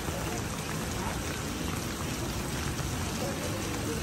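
Steady rain falling on a wet paved street.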